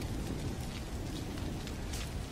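Steady crackling and hiss of a fire burning, with faint scattered pops.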